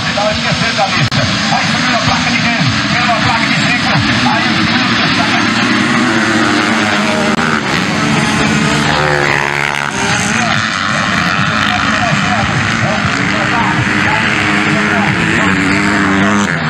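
A pack of 250cc dirt bikes revving hard off the start and racing away, many engines at once, their pitch rising and falling through the gear changes. Around eight to ten seconds in, one bike passes close by, its engine tone sweeping through as it goes past.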